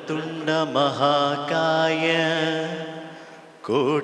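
A solo male voice chanting a Sanskrit invocation to Ganesha in a slow, sung style, with long held notes that waver in pitch. One phrase fades out about three seconds in, and the next begins just before the end.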